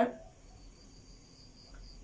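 A faint, steady high-pitched insect trill during a pause in speech, with the tail of a spoken word at the very start.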